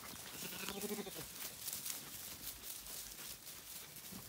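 A Zwartbles lamb bleats once, briefly, about a third of a second in. Short rustles and knocks of movement sound around it.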